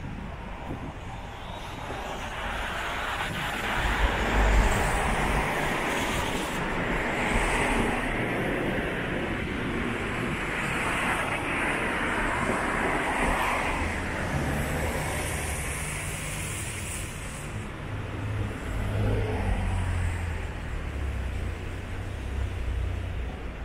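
Street traffic: vehicles passing, their tyre and engine noise swelling from about two seconds in and easing off near the end, with a deeper engine rumble in the second half.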